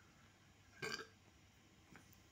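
Near silence with one short sound from a person's throat or mouth about a second in, lasting about a quarter of a second.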